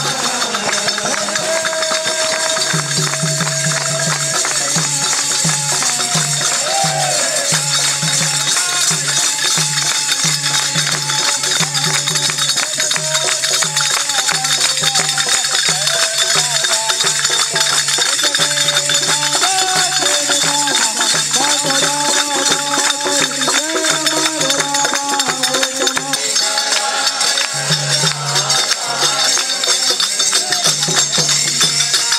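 Group devotional bhajan (kirtan) with men singing to steady hand clapping and a dholak drum beat.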